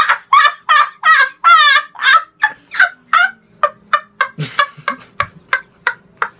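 A boy's high-pitched, rapid cackling laugh: a long run of short hoots, about three or four a second, that gradually grow shorter, sparser and quieter toward the end.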